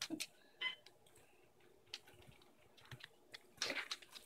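Faint, scattered clicks of a dog's claws on a tile floor as it moves about, with a small run of clicks near the end.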